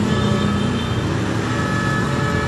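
Small engine-driven water pump on the back of a water tanker truck running steadily, sucking water from the tank into the watering hose. It makes a continuous hum with a faint, steady high whine.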